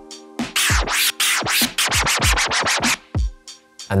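Baby scratches: a sample scratched by pushing a Serato control vinyl back and forth on a turntable, through a Pioneer DJM-S5 mixer. It is a rapid run of rising and falling pitch sweeps, one for each push and pull, heard in both directions because the crossfader is not used. A few softer strokes come near the end.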